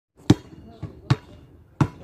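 A basketball being dribbled on a hard outdoor court: three loud bounces, a little under a second apart, with fainter knocks between them.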